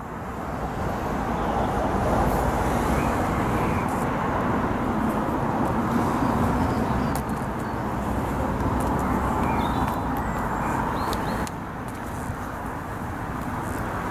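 Steady outdoor background noise of road traffic, with a few faint short chirps. The noise eases slightly near the end.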